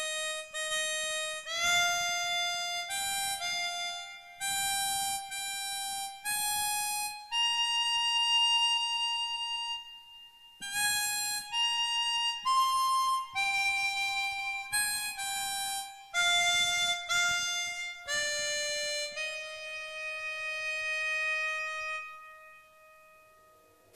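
Solo harmonica playing a slow, single-line melody as the introduction to an enka song. The notes are held and broken by short pauses, and it ends on one long note that fades away.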